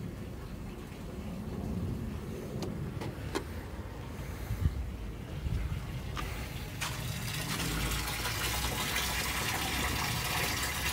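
Water from a garden hose pouring into a large, part-filled fish tank during a water change, the splashing growing louder about seven seconds in. A few sharp clicks come in the middle.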